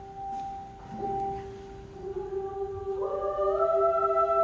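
Show choir singing held notes, with more parts coming in about three seconds in and swelling into a louder, fuller chord.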